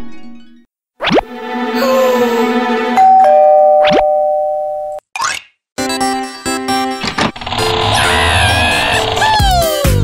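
Background music, with a doorbell's two-note ding-dong chime about three seconds in, held for about two seconds.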